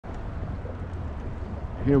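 Wind buffeting the microphone: a low, uneven rumble that goes on steadily until a man's voice starts at the very end.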